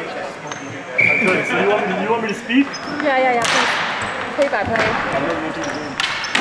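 Ball hockey faceoff in a gymnasium: men's voices echo through the hall, then a sharp clatter of sticks and ball on the hard floor about halfway through, ringing in the room, as play gets under way.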